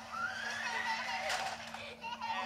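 Film trailer sound effects through a portable DVD player's small speaker: a rising whine over about a second and a half that ends in a sharp hit, with a steady low hum underneath.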